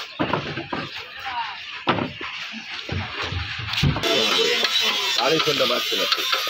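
Men's voices and music, with a few sharp knocks in the first four seconds as the wooden speaker cabinet is shifted on the plank bed of the van. About four seconds in, a steady hiss comes in under the voices and music.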